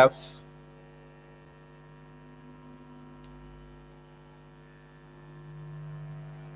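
Steady electrical mains hum in the recording, a low buzz with a stack of fixed overtones, with a single faint click about three seconds in.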